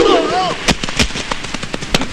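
Film fight sound effects: a loud shout with a blow right at the start, then several sharp punch and blow impacts in quick succession, mixed with men's yells and grunts.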